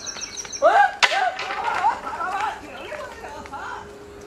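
People yelling and crying out with no clear words, loudest about a second in, where a single sharp crack cuts in.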